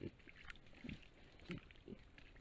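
Wild boar giving about four short, low grunts while rooting at a muddy wallow.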